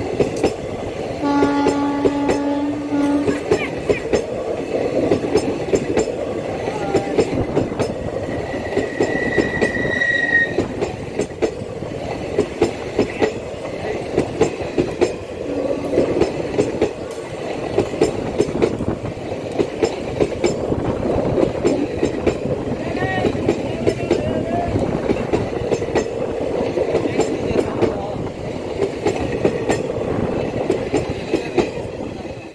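Indian Railways passenger coaches running past close by, their wheels clattering over rail joints in a steady rhythm of loud clicks. A horn sounds for about two seconds, starting about a second in, and a brief thin high squeal comes around nine to ten seconds.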